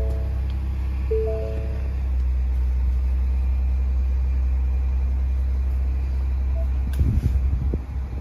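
Ford Bronco Wildtrak's 2.7-litre twin-turbo V6 idling at about 1,200 rpm just after start-up, a steady low rumble heard from inside the cabin. A short three-note chime sounds about a second in, and a few irregular thumps come near the end.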